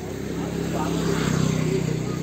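A motor vehicle's engine running close by, swelling and then easing, over the murmur of a crowd.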